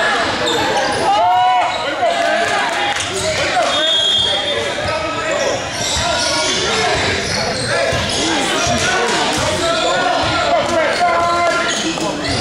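Basketball game in a large gym: a ball dribbling on the hardwood court under a steady mix of players and spectators calling out, with a brief high whistle-like tone about four seconds in.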